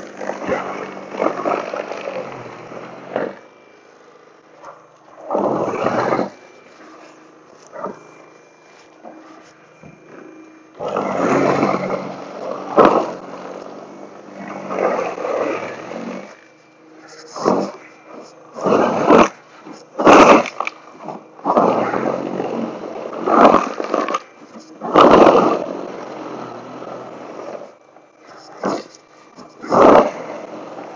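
Toro Power Clear e21 60-volt battery snow blower running, its electric motor holding a steady hum under a string of loud, uneven bursts as the steel auger bites into snow packed down by car tracks and throws it.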